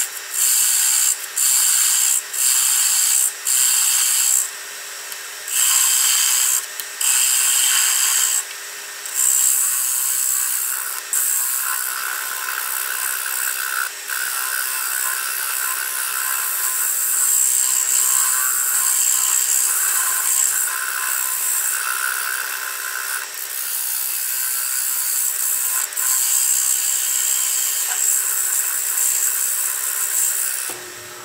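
A bowl gouge cutting the tenon off the bottom of a cherry bowl spinning on a wood lathe. For the first nine seconds it comes in short cuts of about a second each with brief gaps. It then becomes one long unbroken cut.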